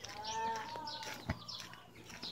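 A single drawn-out animal call lasting under a second, with small birds chirping. A sharp knock comes just after the middle.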